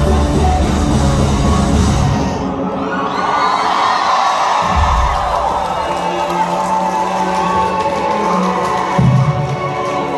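A live rock band plays loudly at full volume, then the drums and bass stop about two seconds in. The crowd cheers and whoops while steady held notes carry on underneath.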